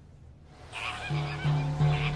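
A flock of birds honking and calling, starting a little under a second in, over music.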